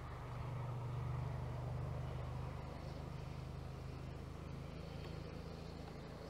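A motor vehicle's engine humming low and steady nearby, swelling a little about a second in and then easing off slowly.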